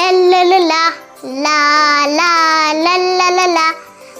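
A young girl singing 'la la la' in long held notes, in two phrases with a brief break about a second in.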